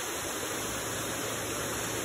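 Steady rushing, water-like noise from the aerated fish-rearing tanks, with air bubbling and water running in rows of tanks, and a faint low hum beneath it.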